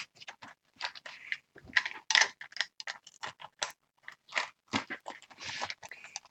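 Irregular clicks, taps and rustles of stationery being handled close to the microphone: a ruler being pressed and moved on a desk among pens and pouches.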